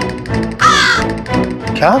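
A single crow caw about half a second in, loud over steady background music.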